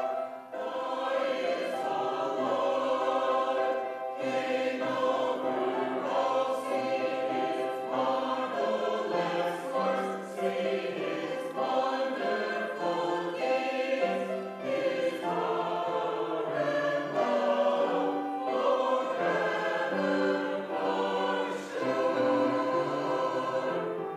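Mixed church choir of men's and women's voices singing an anthem in parts, with sustained, overlapping lines.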